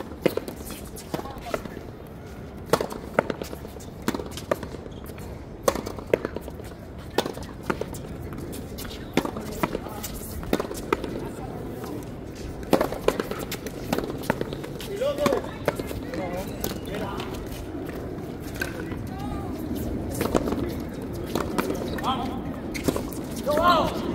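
Frontenis rally: the ball cracks off racquet strings and smacks the concrete front wall in quick, irregular succession, a sharp hit every second or so.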